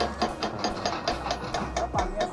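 Powered rock breaker hammering rock at a road cutting, a steady train of sharp metallic clanks at about six to seven blows a second.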